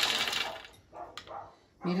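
Shelled nuts pouring from a glass bowl into a food-processor bowl, a dense rattling patter that trails off within the first second. A couple of light clicks follow.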